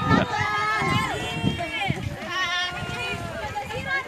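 Several voices talking over one another: group chatter.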